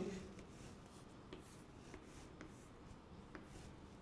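Faint chalk strokes on a chalkboard as lines are drawn, with a few light taps of the chalk about a second apart.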